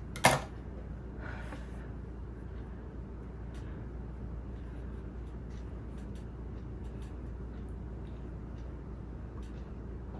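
A single sharp click from a pair of scissors, followed by faint rustling and small ticks as fabric is pulled and tucked over the edge of the ottoman.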